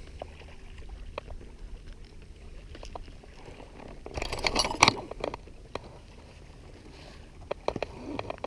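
Light knocks and clicks from a canoe and fishing gear being handled over a steady low wind rumble, with a short burst of louder clattering about four seconds in.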